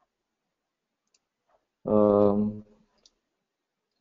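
A few faint computer clicks as the web page is edited, and about two seconds in a man's single drawn-out hesitation sound, a held "uhm" lasting under a second.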